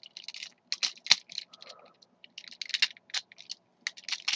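Plastic parts of a Transformers Robots in Disguise Railspike toy clicking and clacking as they are pulled apart and repositioned by hand during its transformation, with a sharp click about a second in.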